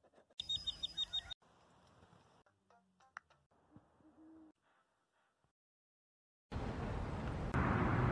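A string of short, separate sounds: a low owl hoot about four seconds in, after brief high chirps near the start. Near the end comes a loud rush of splashing water as a greater scaup flaps its wings on the surface.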